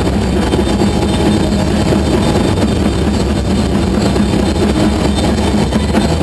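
Loud live noise-rock band, with distorted electric bass and guitar through stacked amplifiers sustaining a steady, dense drone heavy in the low end.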